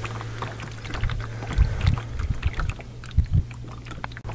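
Small waves lapping and slapping against the hull of a small rowboat, with scattered little splashes and a few dull thumps.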